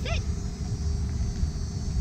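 A spoken "sit" at the start, then a steady low outdoor rumble with no distinct events.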